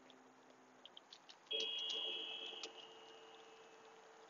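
A timer's chime rings out about one and a half seconds in: a bright ringing tone that holds for about a second, then fades slowly. In this 20-second breathing cycle it is the long chime, the cue to inhale.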